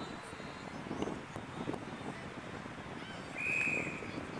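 Outdoor ambience of faint distant voices, then a single short blast of an umpire's whistle about three and a half seconds in.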